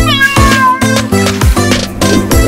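A single long cat meow in the first second, falling in pitch and then held, over upbeat music with a steady beat of about two thumps a second.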